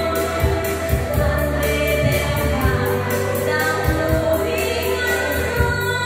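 A woman singing into a microphone through a sound system over backing music with a steady beat and a sustained bass line.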